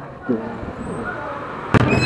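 Faint voices over street background, then a sudden loud thump near the end, after which nearby voices are much louder.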